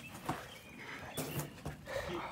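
Faint scuffing and clothing rustle of a person hauling himself up out of a manhole, with a brief louder rustle just past the middle.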